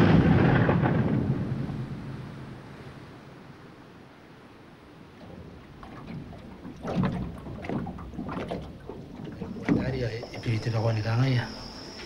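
Thunder rumbling and dying away over the first few seconds, followed by quieter, irregular sounds.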